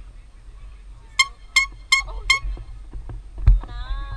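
Four short, high honks in quick even succession, then a sharp thump and a wavering call that falls in pitch near the end.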